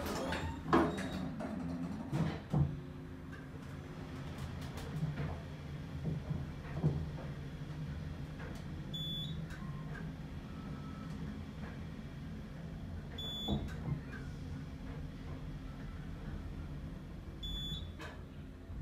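Elevator cab riding up, heard from inside: a few knocks in the first seconds as the doors close and the car starts, then a steady low motor hum. A short high electronic beep sounds three times, about four seconds apart, as the car passes each floor.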